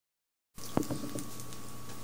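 Dead silence for about half a second, then steady room noise with a faint steady hum, and a single sharp knock shortly after.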